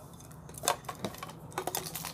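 Metal link bracelets of gold wristwatches clicking and clinking as several watches are handled together: a few sharp, irregular clicks.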